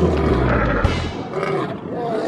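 Animal roar sound effect in an outro sting: one roar tails off, and another begins about a second and a half in. A low musical bass underneath stops a little after a second.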